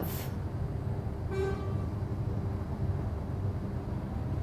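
Steady low background rumble, with one short, faint toot about a second and a half in.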